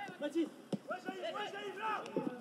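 Faint voices from players on a football pitch calling out, with a single sharp knock about three-quarters of a second in.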